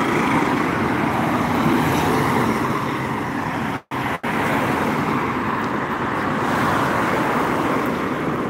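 Roadside traffic noise: a steady rush of passing vehicles on a highway. The sound cuts out briefly twice about four seconds in.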